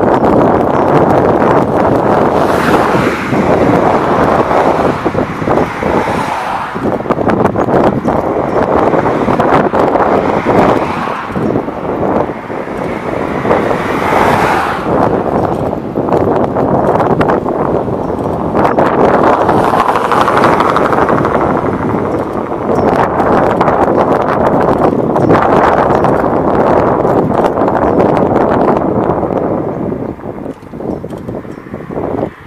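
Wind buffeting the microphone: a loud, uneven rushing that swells and dips every few seconds.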